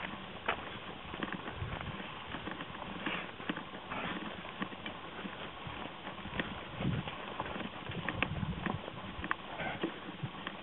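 Hooves of a herd of young black-and-white dairy cattle trotting over grass and a gravel track: a rapid, irregular patter of many hoofbeats.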